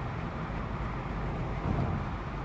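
Steady road and engine noise inside a car's cabin while driving on a freeway, a low, even rumble.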